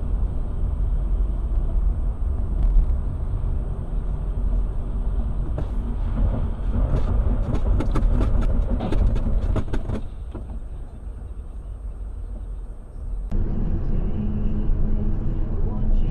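Car interior road and engine rumble picked up by a dashboard camera, with a faint high whine and a cluster of sharp clicks in the middle. The sound changes abruptly near the end, when another clip's audio starts.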